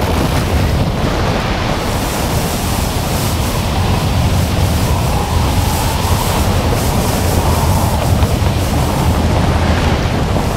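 Loud, steady rush of air buffeting the microphone during a skydiving free fall.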